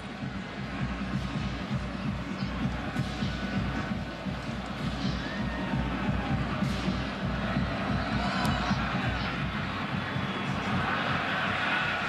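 Football stadium crowd noise with music playing over it, a steady continuous din.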